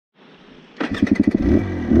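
Dirt bike engine at low revs, firing in distinct rapid pulses for about half a second, then smoothing into a steady run and revving up right at the end.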